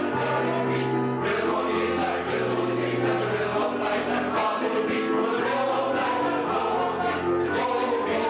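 Male voice choir singing in harmony, with held chords over a low bass line that change every second or two.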